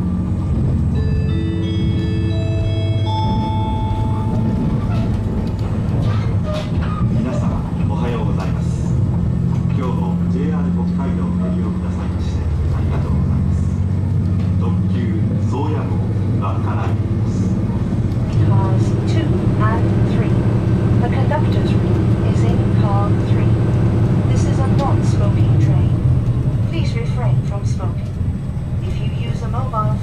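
KiHa 261 series diesel railcar running, its engine and running gear giving a steady low drone inside the carriage that grows louder about two-thirds of the way through. A short rising chime of several notes plays about a second in.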